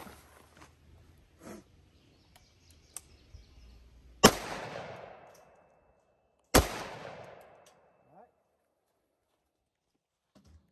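Two AR-15 rifle shots of .223 target ammunition, a little over two seconds apart, each followed by a trailing echo that dies away within about a second.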